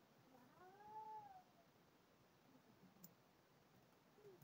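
A toddler's single faint wordless call, one rising-then-falling cry lasting about a second.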